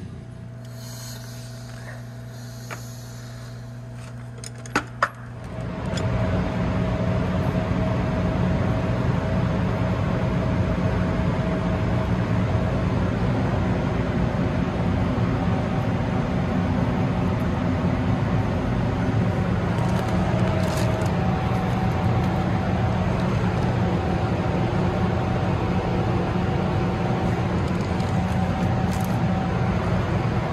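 A low hum with a couple of sharp clicks, then about five seconds in a loud, steady mechanical drone with a faint held whine starts and keeps going.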